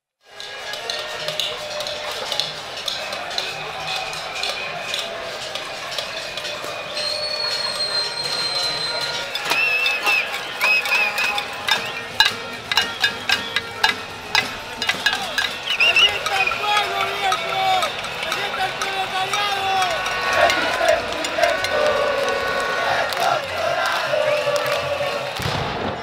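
Street protest crowd: many voices shouting and chanting over a dense clatter of sharp knocks and clinks, with a held whistle-like tone. A run of louder, rapid knocks comes in the middle.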